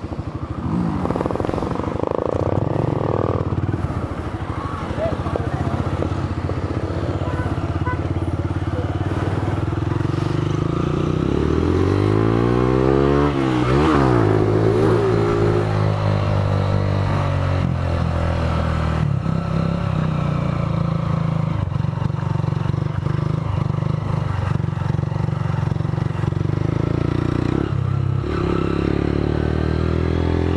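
Motorcycle engine running steadily while riding. About halfway through, a second motorcycle's engine note rises and falls as it passes close by, then the steady engine sound carries on.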